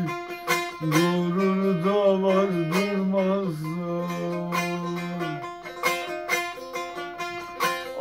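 A man singing a Turkish folk melody in long, ornamented notes over a cura, the smallest bağlama, strummed in quick, steady strokes in Nesimi düzeni tuning. The voice holds one long note from about three and a half to five seconds in, leaves the cura playing alone for a couple of seconds, and comes back in near the end.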